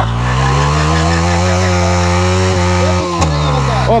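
Yamaha R15's single-cylinder four-stroke engine held at high revs during a burnout, spinning the rear tyre in place. The engine note stays steady and dips slightly about three seconds in.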